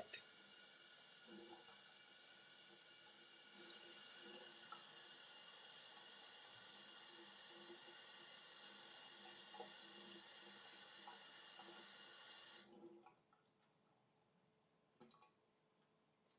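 Faint running tap water pouring onto a shaving brush to soak it. It cuts off suddenly near the end, leaving near silence with a couple of faint clicks.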